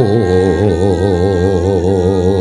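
A man's voice holding one long sung vowel with a wide, even vibrato: the dalang's sulukan, the chanted mood song of a Javanese wayang kulit performance, with quiet accompaniment underneath.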